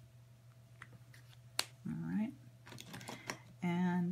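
Light taps and clicks of a colouring pencil being handled and set down, with one sharp click about a second and a half in, over a steady low hum; a woman's voice makes short sounds about two seconds in and again near the end.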